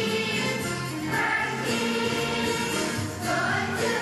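A large children's choir singing a song with musical accompaniment.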